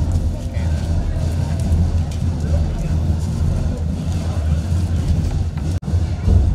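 A steady low rumble with no clear tones, broken by a sudden brief dropout near the end.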